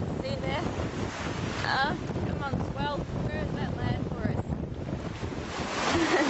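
Strong wind buffeting the microphone over rushing, breaking sea around a small sailing yacht. A few short, wavering high sounds come through in the first half, and a louder rush of water rises near the end.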